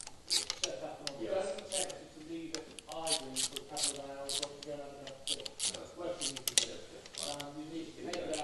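Hand ratchet clicking in short, uneven runs as connecting-rod cap bolts are run down, with talking going on underneath.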